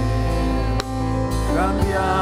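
Live worship band music: electric bass, keyboard chords and drum kit, with a few drum hits and a singing voice coming in near the end.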